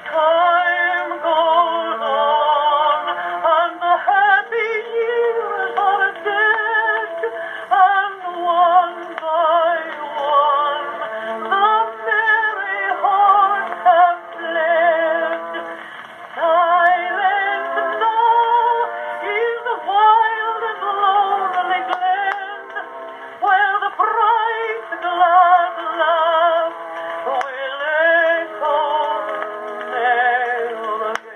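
An Edison Blue Amberol cylinder playing back through the phonograph's wooden horn: an early acoustic recording of a female singer with orchestral accompaniment. The sound is thin and narrow, with no deep bass or high treble.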